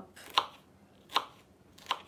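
Kitchen knife slicing a myoga ginger bud into thin rounds on a wooden cutting board: three sharp chops, each about three-quarters of a second after the last.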